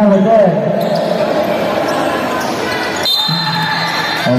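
A repeated chanted vocal line in the first half-second and again from a little after three seconds. Between them is the noise of a basketball game in a large gym, with the ball bouncing on the court.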